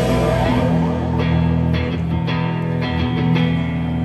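Live rock band playing an instrumental passage without vocals: electric guitars over bass and drums, with a guitar line sliding in pitch about half a second in.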